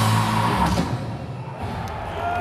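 Live black metal band playing the last chord of a song, with guitars and drums ringing out loud and then dying away about a second in. Crowd noise follows.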